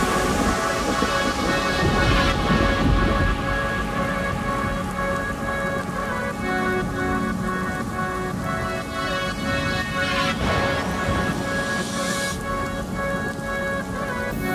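Instrumental breakdown of a house remix: held synth chords over a low, rumbling, rain-like noise texture. A bright rush of noise swells in near the end.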